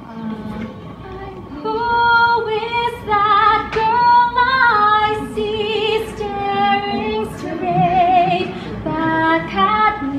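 A young woman singing solo, coming in about a second and a half in, with long held notes carrying a clear vibrato.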